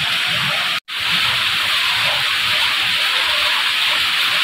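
Steady rain falling on wet concrete and into puddles, an even hiss that drops out for an instant just under a second in.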